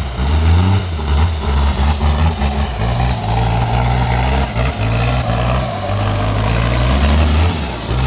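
Modified off-road 4x4's engine running hard under load, revving up and down in steps as it claws through mud.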